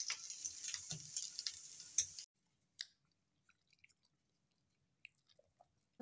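Shami kababs frying in oil on a flat griddle (tawa), sizzling and crackling. The sizzle cuts off suddenly about two seconds in, followed by a few faint scattered clicks.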